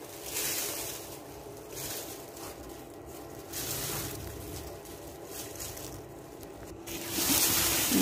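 Bone-dry herb leaves and stems rustling in a woven plastic sack as a hand rummages through them, in several uneven bursts.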